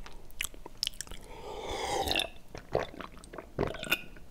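Close-miked mouth sounds of someone drinking from a glass: small wet lip and tongue clicks, with a longer gulping swallow about halfway through.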